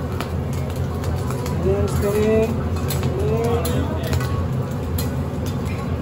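Busy teppanyaki restaurant sound: a steady low hum under faint background voices, with a few sharp clicks of a metal spatula on the steel hotplate.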